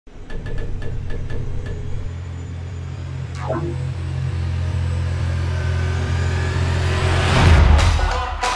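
Intro sound design: a steady low rumbling drone with a few light ticks at the start and a quick downward sweep about three and a half seconds in. A rising whoosh builds to a peak near the end.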